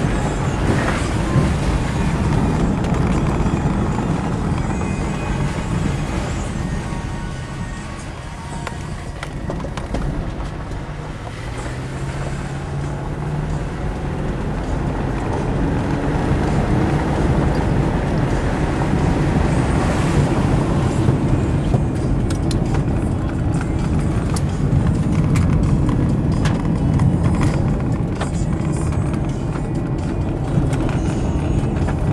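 Road and engine noise inside a moving car's cabin: a steady low rumble, with the engine tone rising briefly about midway.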